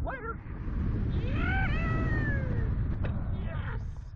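A man screaming as he is launched upward on a Slingshot reverse-bungee ride: short yelps at the launch, then one long wavering scream that rises and falls, over loud wind rushing past the microphone.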